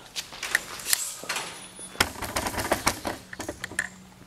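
A series of irregular light clicks and knocks, with one heavier knock about halfway through.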